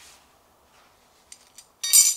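Small metal screws and bolts clinking on a concrete floor as they are picked through by hand: a couple of faint clicks, then a brief, brighter ringing clink near the end.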